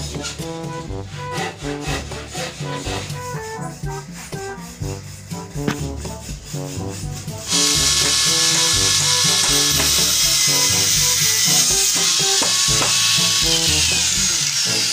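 Background music, then about halfway through an angle grinder starts up and cuts through a thin stainless steel tube: a sudden, loud, steady grinding hiss that lasts until near the end.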